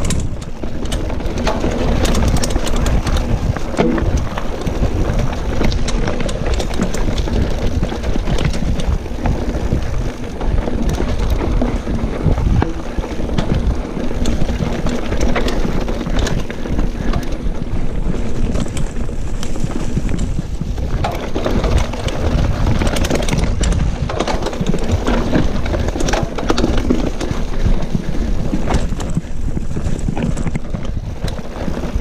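Mountain bike descending a rough dirt singletrack at speed: wind rushing over the microphone, tyres rolling over dirt and roots, and the bike rattling over bumps with frequent sharp clicks.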